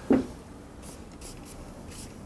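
Drawing strokes on easel paper: a handful of short, light scratching sketch strokes as fold lines are drawn in.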